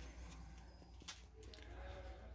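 Quiet handling at the workbench: a few faint soft clicks over a low steady hum as a strip of tape is taken and wrapped around the foil blade to hold the wire.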